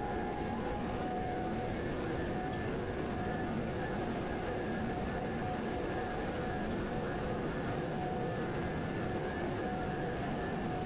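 Steady drone of industrial plant machinery: a constant noisy hum with faint, even whining tones above it.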